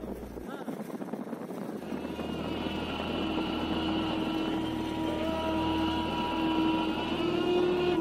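Engine of a moving motor vehicle running steadily, with wind noise, and a long held steady tone that grows louder from about two seconds in.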